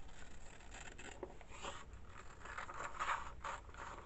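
Scissors cutting through a sheet of paper: a run of short crisp snips and rasps as the blades work along the line.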